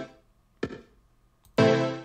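Chorded synth pad from Native Instruments Massive, its volume pumping on and off about twice a second, each pulse coming in sharply and fading. The pumping is made by a Performer curve modulating the amps instead of sidechain compression. It cuts off at the start, leaving near silence broken by one short blip, and starts pumping again about one and a half seconds in.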